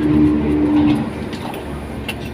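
A motor vehicle's engine drone, steady and pitched, that fades away about a second in, leaving a lower rumble of traffic.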